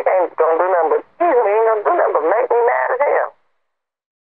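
A person speaking in a thin voice squeezed into a narrow, telephone-like band of pitch; the talk stops about three and a half seconds in.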